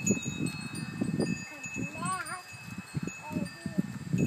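A wind chime being set ringing by a small child's hand: several clear tones start together and ring on, overlapping, over low bumps and rustling. About halfway a short call rises and falls in pitch.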